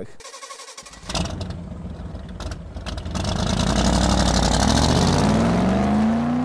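Car engine accelerating: a swelling sound that builds from about a second in, its pitch rising and loudest over the last two seconds.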